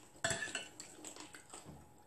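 Metal spoon clinking against a glass bowl of soup as food is scooped: one sharp clink about a quarter second in, then a few faint taps.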